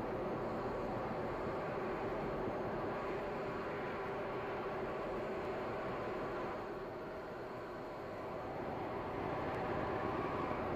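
Atlas V rocket's RD-180 main engine and four solid rocket boosters firing during ascent, a steady rumble that eases slightly about two-thirds of the way through.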